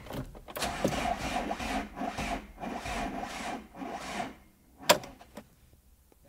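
An old van's starter motor cranking the engine heavily for about four seconds without it catching, then a click near the end as the key is released. The sluggish cranking points to a weak battery: the van is later jump-started.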